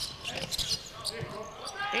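A basketball bouncing on a hardwood court, a few irregular dribbles.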